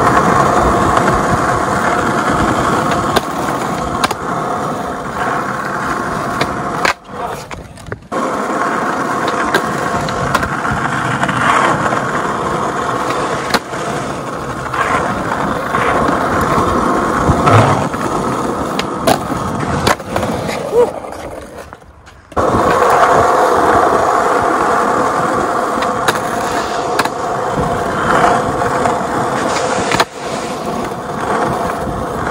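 Skateboard wheels rolling over rough asphalt, a loud steady roar broken by a few sharp clacks from the board. The roll drops out briefly twice, about seven seconds in and again about twenty-two seconds in.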